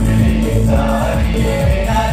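Live band music with electric bass, drum kit and keyboard, and men singing into microphones; the voices come in a little under a second in.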